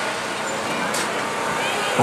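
Steady outdoor crowd and street noise, with faint distant voices and a short click about a second in.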